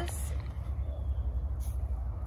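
Low, unsteady rumble of wind buffeting the microphone, with two brief soft rustles, one just after the start and one about a second and a half in.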